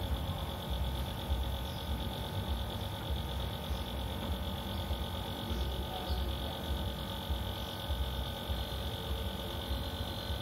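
Outdoor background noise: a fluctuating low rumble, like wind on the microphone, under a steady high-pitched hum, with no ball strikes.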